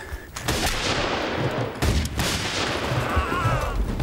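Massed musket fire of a battle: a continuous crackle of shots, with a few louder single reports standing out.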